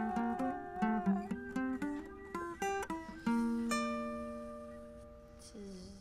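Guitar and flute improvising together. A held flute note fades in the first second under a run of quick plucked guitar notes. About three seconds in, a guitar chord is struck and left to ring, slowly fading away.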